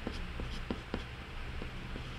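Pencil on paper: a scatter of short, scratchy ticks from pencil strokes, most of them in the first second, over a steady low hum.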